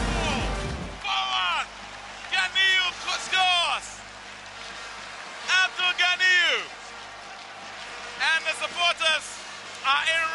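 Loud dense noise that cuts off about a second in, then short bursts of high-pitched wordless cries, each falling sharply in pitch, in four groups, the celebration after a goal.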